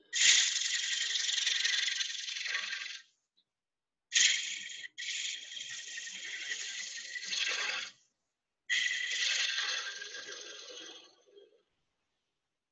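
Turning gouge cutting cherry on a spinning bowl on a wood lathe, shaving wood in three passes. Each pass is a steady hiss lasting a few seconds, with short silent breaks between.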